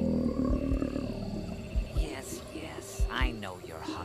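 Added soundtrack effects: a heartbeat thumping in lub-dub pairs about every second and a quarter, under a low growl that falls away in the first half-second, and high gliding cries in the second half.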